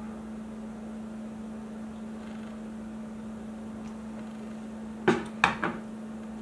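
Parts of a 3D-printed plastic harmonic drive being handled during disassembly: a quiet stretch, then three sharp knocks in quick succession about five seconds in, as parts knock against each other and the table. A steady low hum runs underneath throughout.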